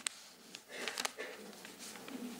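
A man's pause between spoken phrases: a faint sniffing breath drawn in, with two short clicks about a second apart.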